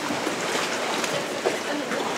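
Steady rushing hiss of a rainy windstorm.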